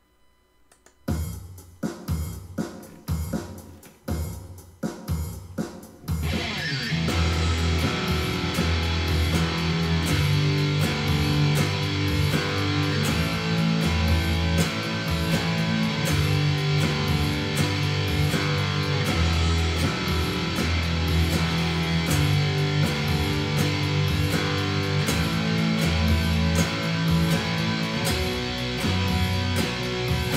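A metronome count-in of evenly spaced clicks for about the first six seconds. Then an electric guitar plays an eighth-note power-chord riff along with a recorded guitar track and the metronome, slowed to half speed at 60 beats per minute.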